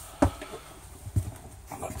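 Footsteps on a travel trailer's floor as the camera person walks into the bedroom: a sharp click about a quarter second in and a dull thump about a second later.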